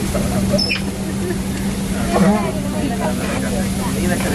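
Indistinct passenger chatter inside an airliner cabin over a steady hum from the aircraft's systems, with a brief high falling squeak about half a second in.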